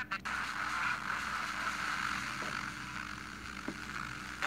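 FM radio static: a steady hiss from a Sony Ericsson phone's FM radio tuned between stations. A station's voice cuts off just as it begins.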